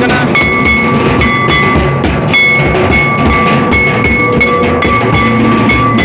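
Folk drumming from a two-headed hand drum and a large stick-beaten drum, beating a steady rhythm, with a high held tone from a wind instrument sounding over it.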